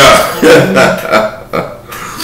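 A man laughing, loudest at the start and trailing off.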